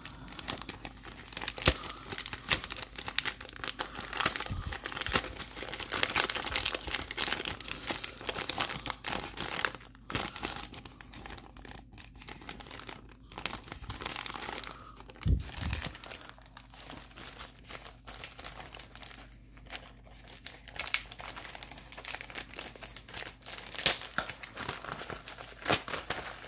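An eBay padded mailer being crinkled and torn open by hand: an irregular run of crackles, rustles and short rips.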